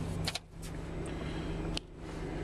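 Toyota SUV idling, a steady low hum heard from inside the cabin, with a couple of faint clicks as the phone is moved.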